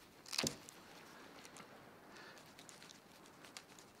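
Knife cutting and peeling the hide off a whitetail deer's skull at the antler base: a short, sharp rasp about half a second in, then faint intermittent scraping.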